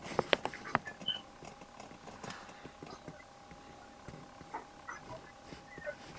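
Faint scattered clicks and taps over an open video-call line, several close together in the first second and then sparser, with a faint steady hum underneath.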